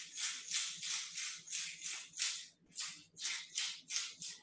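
Hand-twisted pepper mill grinding black peppercorns, a steady run of short crunchy rasps about three a second.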